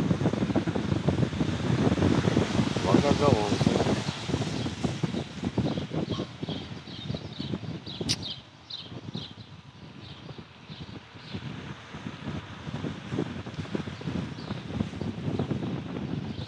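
Wind buffeting the microphone on a motorboat being towed along a road on its trailer, a dense low rumble that is strongest in the first few seconds and eases after about eight seconds. A single sharp click comes about eight seconds in, among a string of faint high chirps.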